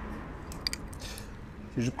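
A few light clicks and clinks of wristwatches and their bracelets being picked up and handled, over low background noise, with a man's voice starting near the end.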